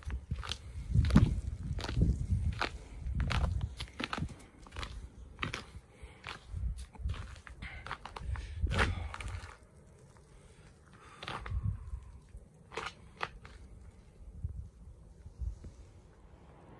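Footsteps crunching on packed snow, irregular and about one or two a second, with bursts of low rumble on the phone's microphone; the steps grow sparser and quieter in the second half.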